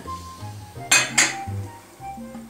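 Two quick glass clinks about a second in, a quarter second apart, as a glass olive-oil bottle is handled among glass bowls and jars, over background jazz music.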